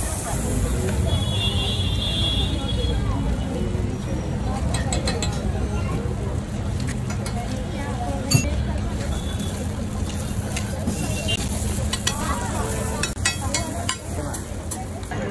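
Busy street-food stall ambience: indistinct background voices over a low traffic rumble, with a metal spatula clicking and scraping on a flat steel griddle a few times, one sharper clink about eight seconds in.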